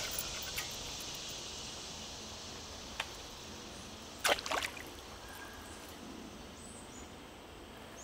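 Outdoor insect chorus, a steady high chirring that slowly fades, with a single soft click about three seconds in and a brief pair of sharp clicks a little after four seconds.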